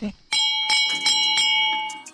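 A metal temple bell rung over and over, struck about three times a second, each clear ringing tone carrying on between strikes and fading near the end.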